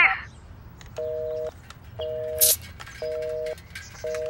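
Telephone busy tone through the phone after the other side has hung up: a two-note beep about half a second long, repeating once a second, three times. The call has been cut off.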